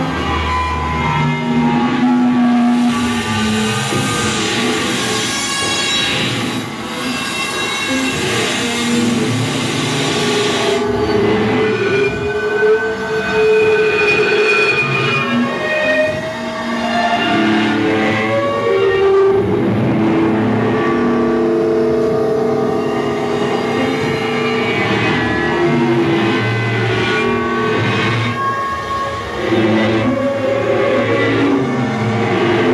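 Live improvised drone music from electric guitar through effects and laptop electronics: layered sustained tones that slowly shift in pitch, with a wash of hiss from about 2 to 11 seconds in.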